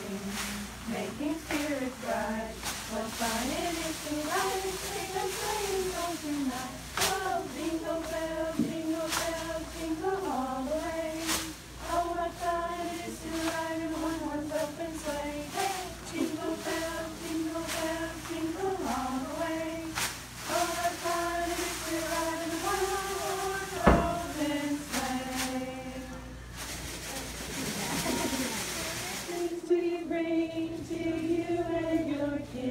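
A group of girls singing a song together, with pompoms rustling and shaking through it. Near the end the singing breaks off into a burst of rustling noise.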